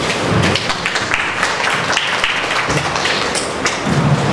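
Audience applauding, a dense patter of many hand claps, with thumps of a handheld microphone being handled as it is passed from one speaker to the next.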